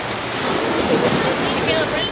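Shallow ocean water washing and splashing around people wading in it, with wind buffeting the microphone and faint voices in the background.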